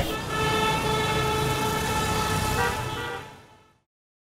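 City road traffic: vehicles running with a long, steady horn-like tone held for a couple of seconds. The whole sound fades out shortly before the end.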